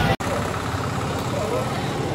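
Steady outdoor background noise with indistinct voices, broken by a momentary dropout just after the start where the audio is cut.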